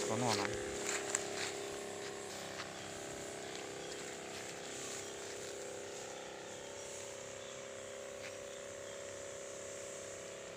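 Battery-powered backpack sprayer's pump motor running with a steady hum, with the hiss of the nozzle spraying a fine mist of fungicide.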